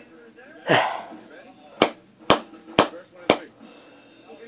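Four sharp clicks about half a second apart: hands knocking loose grains of snuff off the fingers. They follow a short breathy puff a little under a second in.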